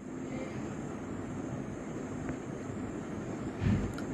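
Steady low background rumble, even and without any clear rhythm or pitch, with a slight swell near the end.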